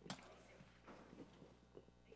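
Near silence: room tone with a few faint short clicks, one just after the start.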